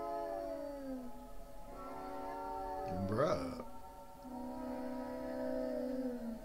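Three long, drawn-out wailing cries, each held on one pitch and then sliding down at its end, with a short, sharply rising yelp about three seconds in.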